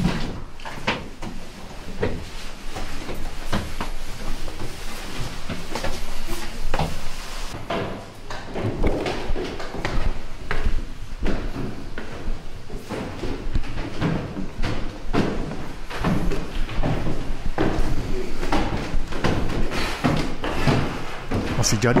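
Footsteps climbing a narrow stone spiral staircase and then wooden stairs, a steady run of knocks and thuds.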